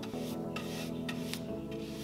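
Round wax brush scrubbing beeswax into bare wood in several short strokes, over background music.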